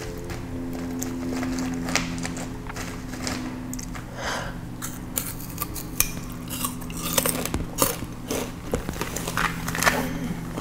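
Fresh sugarcane being bitten and chewed close to the microphone: short crisp crunches and cracks of the fibrous stalk, sparse at first and coming thick and fast in the second half.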